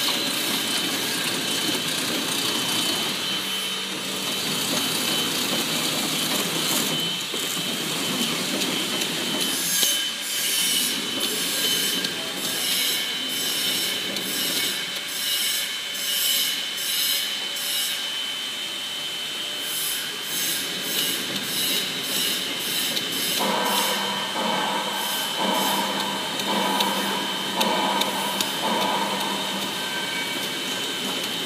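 Horizontal flow-wrap packaging machine running: a steady mechanical whir with a thin high whine, joined about ten seconds in by regular clicks a little more than once a second. Some thirteen seconds later a pulsing mid-pitched tone comes in, switching on and off.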